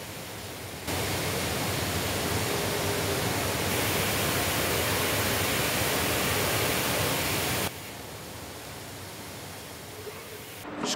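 Steady hiss of robotic paint sprayers in a paint booth. It steps up louder about a second in and drops back to a quieter hiss after about eight seconds.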